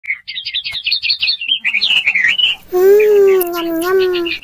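Rapid, high, bird-like chirping and warbling for about the first two and a half seconds, then a voice holding one steady high note for about a second and a half.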